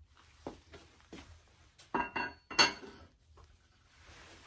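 Metal tool parts knocking and clinking as they are handled and set down on a workbench: a handful of light knocks, with two louder ones around the middle.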